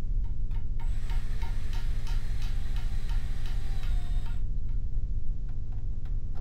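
Cordless drill running for about three and a half seconds while drilling a pilot hole in wood, with a faint ticking about three times a second. It stops suddenly. A few light clicks come just before it starts, over a steady electrical hum.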